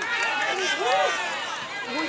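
Several voices calling and shouting over one another, with no single clear speaker; one call rises and falls about halfway through.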